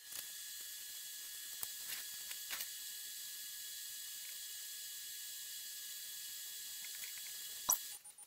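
Steady faint hiss with a thin high whine, broken by a few soft clicks and one sharper click near the end; the hiss cuts off suddenly.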